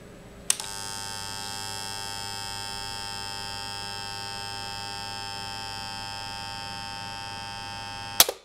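A click about half a second in as 150 A test current is switched on through the middle pole of an AP50 circuit breaker. It is followed by a steady electric buzz from the current-injection test set carrying that load, three times the breaker's 50 A rating, while the thermal release heats toward tripping.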